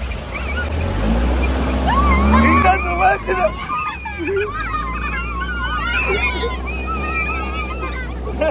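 Dune buggy engine running as it drives through a river, water splashing up against the frame. Children shriek and laugh over it from about a second in.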